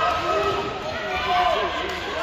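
Several voices shouting from ringside during an amateur boxing bout, over dull thuds from the boxers in the ring, echoing in a large hall.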